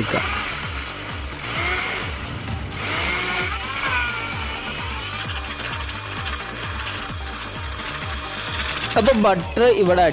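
Electric blender running steadily, churning a tender coconut and butter milkshake, over background music with a regular beat. A voice comes in briefly near the end.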